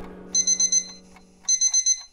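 Bedside alarm clock beeping: two quick runs of about four short, high beeps each, about a second apart.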